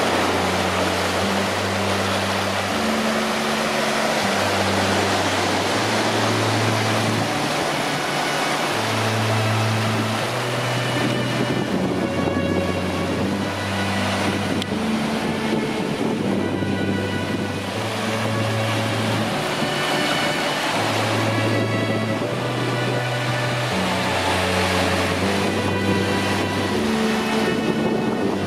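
Sea surf washing in over low rocks at the shoreline, a steady rushing sound, with slow background music of low held notes underneath.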